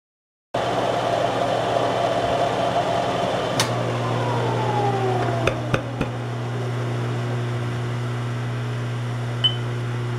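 Milling machine running, a steady motor hum as it cuts a groove in a steel rod held in the vise. Starts abruptly about half a second in; a falling whine and a few sharp clicks come through the middle.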